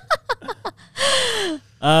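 A woman laughing in short quick bursts, then a breathy gasping exhale with falling pitch about a second in, as the laugh winds down. Talking starts near the end.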